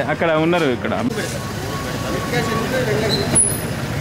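Street sound outdoors: a man's voice briefly in the first second, over the steady noise of road traffic. A short click comes about three and a half seconds in.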